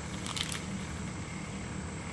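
A bite into a chewy chocolate chip granola bar held in its plastic wrapper, with a few short crackles about half a second in, over a steady low room hum.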